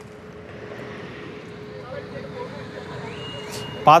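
Roadside traffic noise: a steady hum of vehicles and engines that slowly grows louder, with faint thin high tones near the end.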